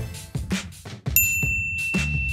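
Upbeat background music with a steady beat. A bit over a second in, a single bright bell-like ding sounds over it and keeps ringing.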